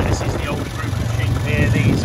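Wind rumbling and buffeting on the microphone, with a few faint, wavering high bleats from a flock of ewes about one and a half seconds in.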